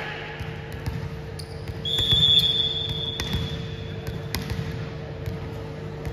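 A referee's whistle gives one steady high note from about two seconds in, lasting a couple of seconds, which signals the serve. A few thuds of a volleyball being bounced on the court sound over the low rumble of a sports hall.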